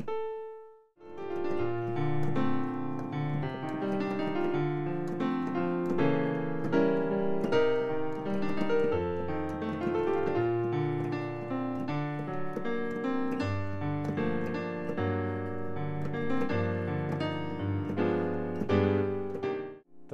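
Digital keyboard with a piano sound playing chords with a melody line over them, continuously from about a second in, after one short held note at the start.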